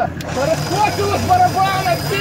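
Voices talking over a vehicle engine running steadily, with a short knock just after the start.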